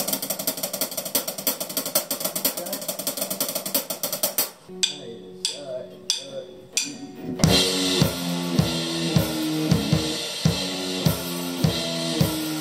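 Rock drum kit played with sticks: a fast snare roll for the first four and a half seconds, then a few sparse hits under held electric guitar notes. From about seven seconds in, kick drum, snare and cymbals lock into a steady rock beat with the electric guitar playing a riff.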